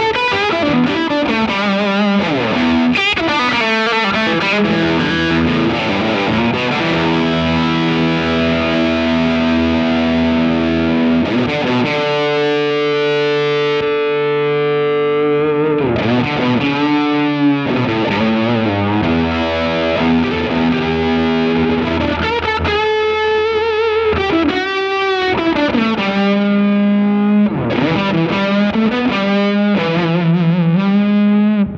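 Electric guitar played through the Ami Effects Umami overdrive pedal with its master volume cranked, giving a heavily driven, distorted tone. Lead lines of bent notes with wide vibrato, with a note held for a few seconds near the middle.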